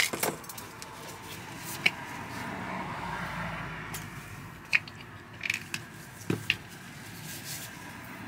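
Plastic condiment containers and a squeeze bottle being handled as a crepe is topped: a few sharp, irregular clicks and knocks, most of them in the second half, over a steady low background hum.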